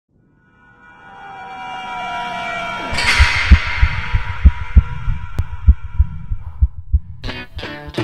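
Cinematic logo intro sound effect: a tonal swell builds and breaks into a bright crash about three seconds in, followed by a run of deep thumps about three a second. Music with plucked strings starts near the end.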